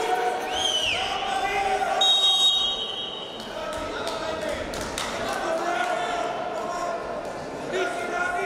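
Referee's whistle blown once about two seconds in, a steady high tone lasting just over a second, stopping the bout's clock. Voices carry in the hall around it.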